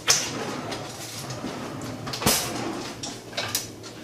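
Handling noise on a kitchen worktop: a low rustle, then one sharp knock a little over two seconds in.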